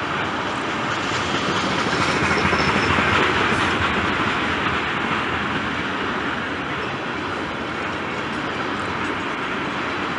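Freight train of tank cars rolling past, its steel wheels running on the rails in a steady rumble. It swells a little about two to four seconds in.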